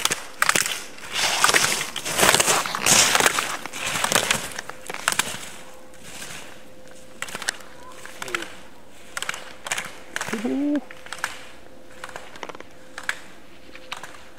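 Slalom skis carving and scraping across hard-packed snow as a racer passes close, loudest from about one to five seconds in, with scattered sharp clicks and knocks.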